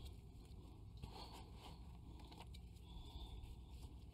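Faint scraping and pattering of potting mix being scooped with a trowel and worked in by hand around plants in a pot, a few small scattered scratches over a low background rumble.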